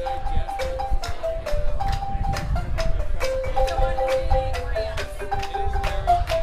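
Zimbabwean-style marimba ensemble playing a quick, repeating melody of short mallet notes, with low bass notes underneath and a steady beat of sharp strikes.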